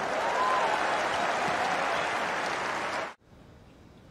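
Tennis crowd in a stadium applauding and cheering a won point, cutting off suddenly about three seconds in.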